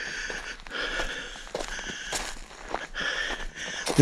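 Footsteps crunching over burnt, ash-covered leaf litter and charred twigs. Behind them, a high-pitched call repeats several times, each lasting about half a second.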